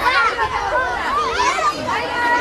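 Many young children's voices chattering and calling out at once, a busy overlapping babble of high voices.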